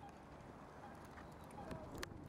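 Quiet outdoor ambience: a faint low rumble with a few short, faint chirps.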